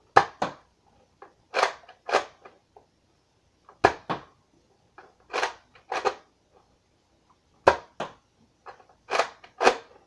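A Nerf Recon Mark II spring-powered dart blaster being primed and fired over and over. Its plastic slide and the shots give sharp clacks, mostly in pairs, about every two seconds.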